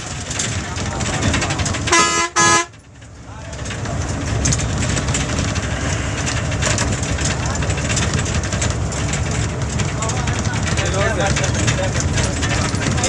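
Steady engine and tyre noise inside a moving bus on a wet road, broken about two seconds in by two short, loud blasts of a vehicle horn.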